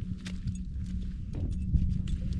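Wind buffeting the microphone on open lake ice: an uneven low rumble, with a few faint clicks.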